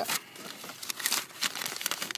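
Plastic bags crinkling and rustling as hands rummage through a bag of trash, a dense run of irregular crackles.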